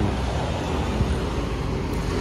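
Steady street traffic noise: a continuous rumble of road vehicles with no single event standing out.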